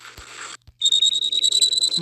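A high-pitched electronic whine from the animation's soundtrack, cutting in sharply about a second in after a brief dropout and then holding, creeping slowly upward in pitch.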